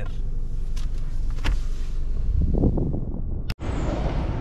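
Low, steady rumble inside a running Toyota car's cabin, with a sharp click about a second and a half in. Near the end it breaks off abruptly and gives way to outdoor street noise.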